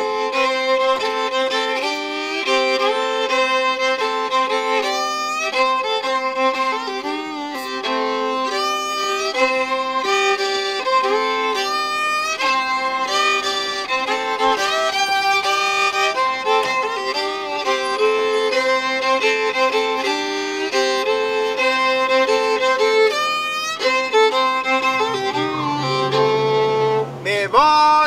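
Unaccompanied fiddle playing an old-style Cajun tune, with two strings often sounding together as the notes move under a steady drone.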